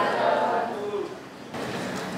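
An audience answering together in a murmured chorus, fading away about a second in and leaving the low hum of a large hall.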